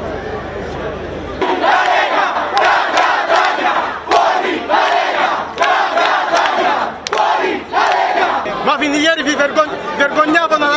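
A crowd of protesters chanting loudly in unison, the same short shout repeated about five times with brief breaks. Before it starts there is a second and a half of steady crowd murmur, and a single man's shouting voice comes in near the end.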